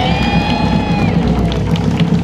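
A short band flourish: big drums rolling under one held note from German bagpipes, which swells in and drops away, cutting off shortly before the end, with some crowd cheering.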